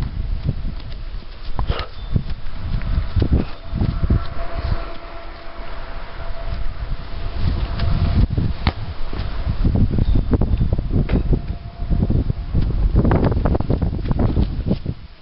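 Wind buffeting the microphone in gusts, with rustling and scattered knocks and clicks.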